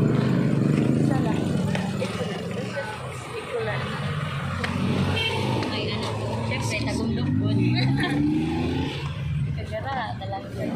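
A jeepney's engine runs at idle close by with a low, steady drone, then revs up about seven seconds in.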